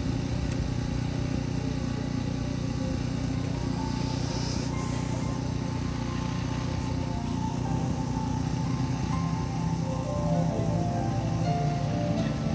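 Electronic keyboard playing slow, sustained chords, the held notes changing a few times.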